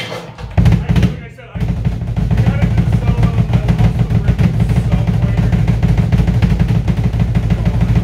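A rock band with drum kit and electric guitars starting a song. A couple of loud hits come about a second in, then the whole band comes in together at full volume at about a second and a half, with fast, steady drum strikes.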